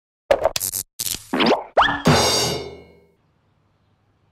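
Cartoon logo sting of music and sound effects: a quick run of short pops, two rising swoops in pitch, then a ringing chord that fades out about three seconds in.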